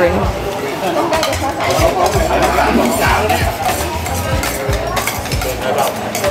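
Busy street-food stall ambience: background voices mixed with clinks of a metal spoon against a plate.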